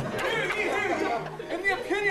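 Male voices speaking lines in character on stage, with rising, exclaiming inflections, between verses of a musical number.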